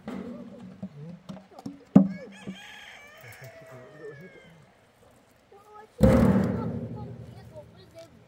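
Empty galvanized steel water tank being tipped over and set down on cinder blocks. There is a sharp knock about two seconds in. Near the end comes the loudest sound, a sudden hollow metal boom that rings and fades over about two seconds as the tank comes down onto the blocks.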